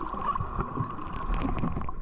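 Underwater noise picked up by a submerged camera: water moving and bubbling around it, with many small irregular knocks and a steady hum that cuts off near the end.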